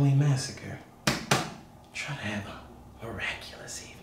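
A man's voice making short, breathy sounds with no clear words, with two sharp clicks close together about a second in.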